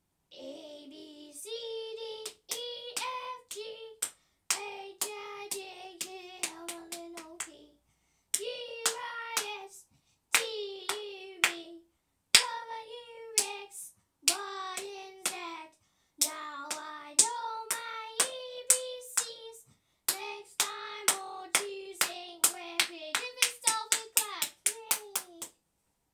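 A young girl singing a tune without clear words, in short phrases, with hand claps among them; the claps come quicker and closer together near the end.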